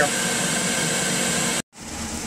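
Food dehydrator's fan running steadily, a constant even rushing noise that cuts off suddenly about one and a half seconds in.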